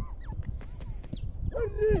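Grey francolin (teetar) calling: a high wavering whistle about half a second in, then a quick run of short, falling notes near the end, over a low background rumble.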